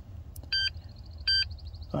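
Simple Key programmer dongle in the OBD port beeping: two short, high electronic beeps about three-quarters of a second apart, closing a three-beep signal during key programming. A faint rapid flutter follows the last beep.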